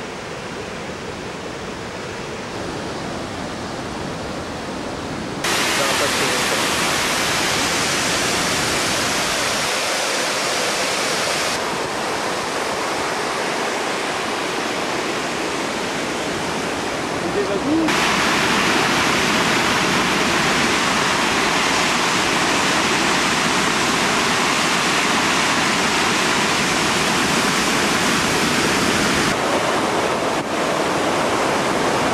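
Water rushing through the gates of a river dam and churning over the concrete baffle blocks below: a loud, steady rush that steps up louder about five seconds in and again about eighteen seconds in.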